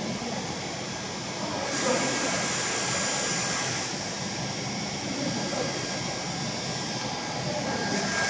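Steady mechanical running noise of textile machinery under test, a continuous hum and rush, with a brighter hiss from about two to four seconds in.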